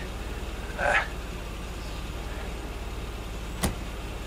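A Mercedes-Benz A-Class idling with a steady low hum, its passenger door shut with a single sharp thump about three and a half seconds in.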